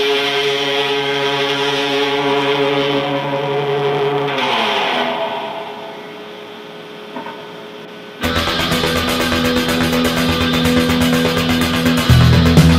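Les Paul-style electric guitar with P-90 pickups, played through an amp: a held chord rings out, slides down in pitch about four and a half seconds in, and dies away to a quiet stretch. Just past eight seconds a loud full-band rock backing track with drums comes in.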